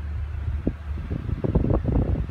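Steady low hum inside a pickup truck's cab. From about half a second in it is overlaid by irregular rumbling and buffeting on the microphone as the handheld camera is swung around, growing stronger toward the end.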